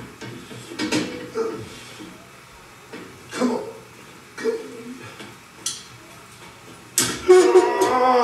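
Steel fender apron panel knocking and clanking against the Jeep's body as it is forced into place, a few separate knocks and then a louder cluster near the end, over background music.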